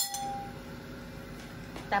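A metal utensil tapped against the rim of an enamelled saucepan rings out with a clear tone that fades away within about half a second. A low, steady background follows until a voice starts near the end.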